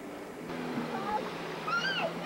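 High-pitched voices, typical of children shouting, call out with rising and falling pitch over a steady low hum, growing louder near the end.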